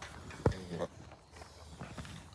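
A llama feeding from a hand-held red plastic feed scoop. There is one dull knock about half a second in, as it bumps the scoop, followed by a few faint clicks and rustling.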